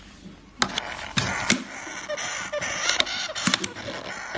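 Thin clear plastic takeout container being handled and its lid worked open: a quick run of sharp plastic clicks and crackles starting about half a second in.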